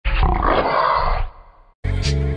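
A big cat growling for about a second, then fading away. Music starts just at the end.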